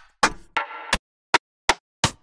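Trap drum-kit one-shot samples auditioned one after another, with dead silence between them: a short hit about a quarter second in, then a longer noisy sample lasting about half a second, then two sharp clicks.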